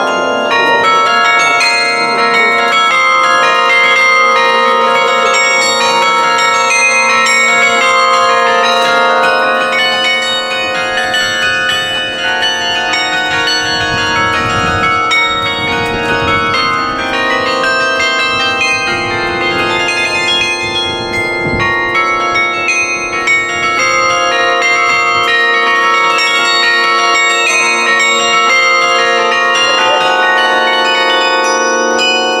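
The Douai carillon played from its baton keyboard: many tuned bells ringing a continuous tune with chords, each note struck and left to ring on under the next.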